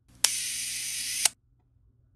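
Camera shutter sound: a sharp click, then about a second of steady whirring hiss, ended by a second, slightly louder click that cuts off suddenly.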